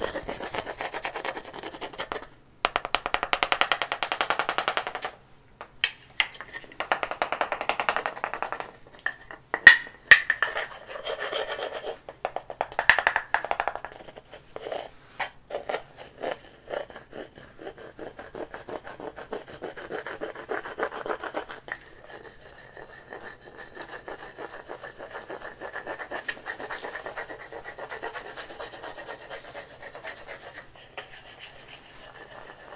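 Hands rubbing and brushing close to the microphone in bursts of a few seconds with short pauses, turning to softer, steadier rubbing in the second half. A couple of sharp ticks come about ten seconds in.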